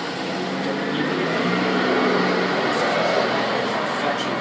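A road vehicle, likely a large one, passing outside: engine and road noise that swells to its loudest about halfway through and then eases off.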